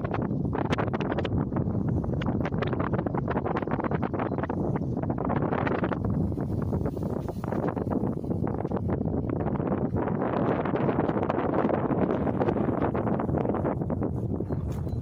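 Sustained applause from a large audience after a line of a speech, a dense even crackle of many hands clapping.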